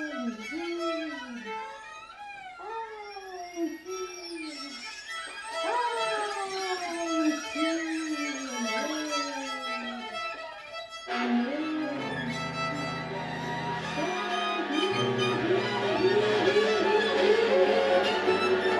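Improvised music for viola, violin, voice and cello. For the first half, repeated falling pitch slides, a few to a second; about eleven seconds in the texture suddenly thickens into low sustained cello tones under quick, short, rising figures that get louder toward the end.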